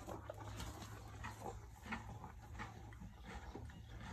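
A horse eating freshly pulled grass: faint, irregular crunching as it chews.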